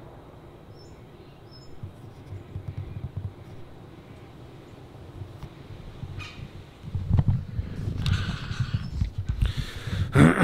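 Camera-handling noise, low rumble and knocks as the camera is moved about, heaviest in the last three seconds as it is turned round. Two short high bird chirps about a second in.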